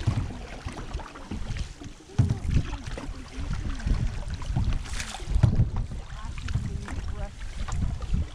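Water sloshing and lapping against the hull of a paddled canoe, with wind buffeting the microphone in uneven gusts.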